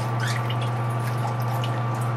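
Water trickling and dripping from the bottom of a hang-on-back aquarium filter as it is lifted from the tank, heard as small scattered drips over a steady low hum.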